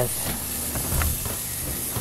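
T-bone steak sizzling on the grate of a kamado-style charcoal grill: a steady hiss, with a faint pop about a second in.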